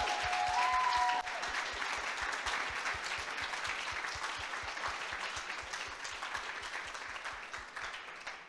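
Audience applauding, the clapping slowly dying away.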